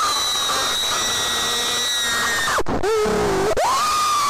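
A cartoon girl's high-pitched scream, held for about two and a half seconds. It drops into a short lower wail, then a second long scream rises in near the end: her shriek at her hair falling out.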